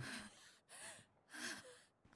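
Near silence broken by two short, faint breathy vocal sounds from a person, about half a second apart.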